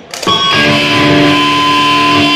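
Amplified electric guitar chord struck sharply about a quarter second in and left ringing steadily and loud, after a brief click.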